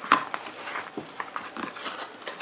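Cardboard motherboard box being handled: the white inner box scraping and rustling as it is slid out of its printed outer sleeve, with irregular light taps and one sharper sound just after the start.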